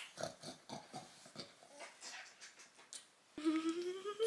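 A young baby's short grunts and snuffles, irregular and close by, while he is held. Near the end a woman hums one note that rises slightly in pitch.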